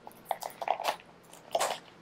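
Crinkling and crackling of a small blind-box pin package being handled and opened by hand: scattered short crackles and clicks, then a louder rustle about one and a half seconds in.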